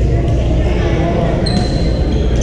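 Echoing hubbub of a busy indoor badminton hall: many voices blended together, with a sneaker squeaking on the hardwood court floor about one and a half seconds in.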